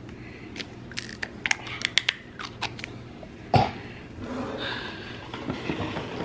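Small clicks and taps of things handled on a kitchen counter, with one louder sudden knock about three and a half seconds in.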